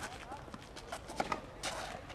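Tennis ball bounced by hand on a hard court before a serve, a few sharp knocks.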